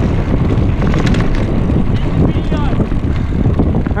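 Wind rumbling on a GoPro microphone during a fast mountain-bike descent on a dirt trail, with tyre noise and rattling knocks from the bike over rough ground.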